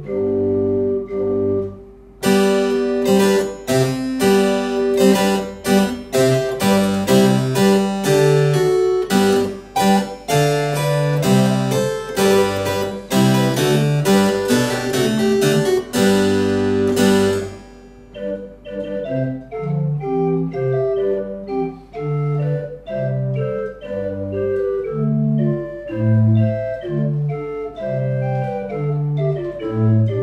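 Claviorganum playing a polyphonic keyboard piece: organ pipes alone at first, then from about 2 s in the harpsichord's plucked strings sound together with the pipes from the same keyboard, until the plucks drop out about 17 s in and the organ pipes carry on alone.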